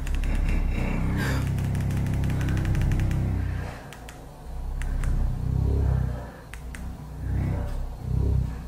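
The massage motors of an adjustable bed base switching on and vibrating with a low hum that swells and eases in waves. A fast rattle runs through the first few seconds.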